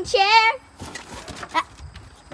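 A high sing-song voice holds a wavering note for about half a second. Then come faint knocks and scuffs as a small dog gets down from a folding camp rocking chair onto a wooden deck.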